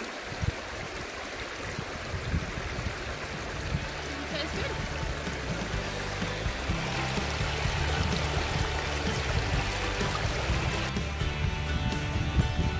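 Water running over stones in a shallow, rocky stream. Background music comes in about four seconds in and grows louder, taking over near the end.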